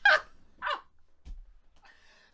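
A person's voice letting out two short high-pitched yelps about half a second apart.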